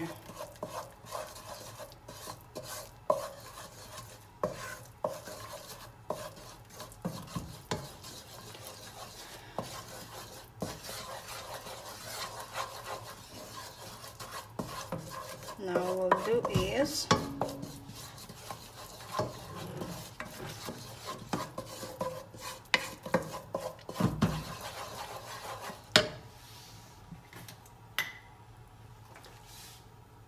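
Wooden spoon stirring and scraping a thick butter-and-flour roux around a nonstick saucepan as it cooks, with irregular knocks of the spoon against the pan; this is the roux stage of a cheese sauce, before the milk goes in. A brief pitched, wavering sound comes about sixteen seconds in, and the stirring thins out over the last few seconds.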